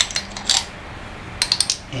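Stainless-steel drain and pipe-nipple extractor on a ratchet socket clinking against a steel pipe nipple as it is handled. There are a few sharp metallic clicks near the start and a quick cluster of clicks a little past halfway.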